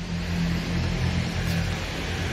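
A steady low mechanical drone, like a motor running, with an even hiss over it.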